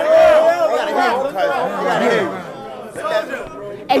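Several men talking and shouting over one another, loudest in the first two seconds and then dying down, until one man shouts 'Hey' at the very end.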